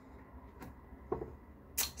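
Quiet room tone broken by a faint click about half a second in, a short faint sound around the middle, and a brief sharp hiss just before the end.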